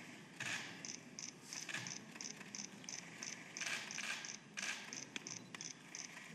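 A run of high, evenly spaced ticks, about three a second, with a few short rustles and sharp clicks: press cameras firing during a photo moment.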